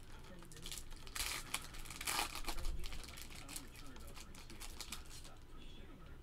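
A foil trading-card pack wrapper being torn open and crinkled. It is loudest about one to three seconds in, then thins to a softer rustle of cards being handled.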